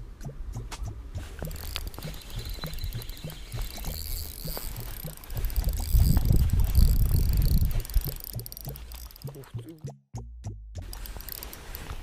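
Shimano Stradic CI4+ spinning reel being cranked, with a regular low ticking of about two to three turns a second while a lure is retrieved. About halfway in there is a loud low rumble as the rod is swept up to set the hook, and the sound cuts out for a moment near the end.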